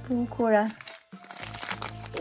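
A foil blind bag crinkling in the hands as it is picked up and handled for opening, starting about a second in.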